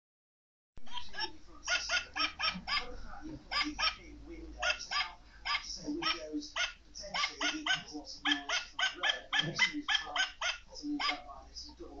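Animated plush toy dog giving a quick, even run of short high barks and yips, starting about a second in.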